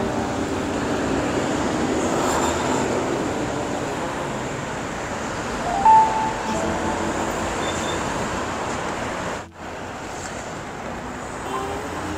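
Steady rush of city street traffic, swelling over the first few seconds, with a short high beep about six seconds in. The sound cuts out abruptly for a moment near the ninth second.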